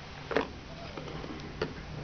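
Small handheld devices being handled on a wooden floor: two short knocks as they are picked up and set down, the first and louder one about a third of a second in, the second near the end.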